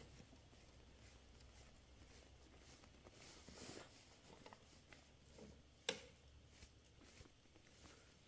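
Near silence: a scooter's hub-motor wheel turned slowly by hand against the braking of two shorted phase wires, giving only a few faint clicks and rustles. One click, about six seconds in, is a little louder than the rest.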